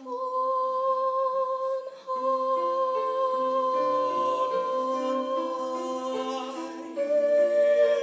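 A vocal duet sung with keyboard accompaniment. One long note is held throughout while the accompaniment moves through changing notes underneath, and a louder new note comes in about seven seconds in.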